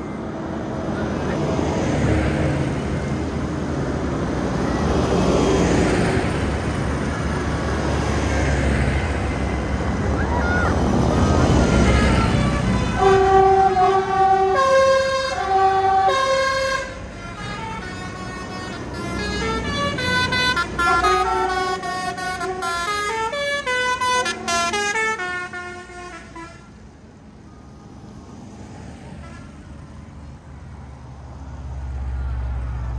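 Diesel tractors driving past on a wet road, their engine rumble and tyre hiss swelling and fading as each one goes by. From about 13 seconds a horn-like tune of stepped notes plays for over ten seconds, then fades as the procession moves on.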